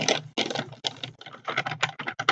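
Plastic blister packs of disposable razors crackling and clacking against each other as they are handled, a quick irregular run of clicks.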